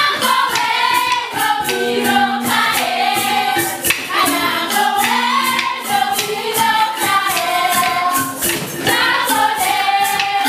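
A group of voices singing a song in unison, over a steady, quick percussion beat.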